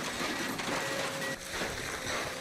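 Komatsu crawler excavator demolishing a wooden building: dense cracking and crunching of splintering timber over the machine running, with a faint steady whine.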